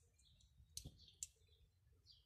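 Near silence with faint high chirps of small birds and two short, sharp clicks, the second about half a second after the first, near the middle.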